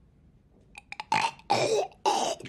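A man's throaty hacking and gagging, imitating a cat coughing up a hairball. A few short clicks come just before a second in, and the loud retching runs on through the end.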